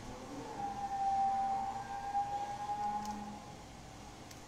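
A single steady tone, held for about three seconds with a slight rise and fall in pitch, that fades out near the end.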